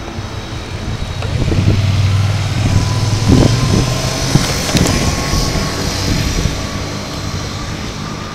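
A motor vehicle passes on the street: its low engine hum and tyre noise swell up over the first few seconds, are loudest in the middle, then fade away.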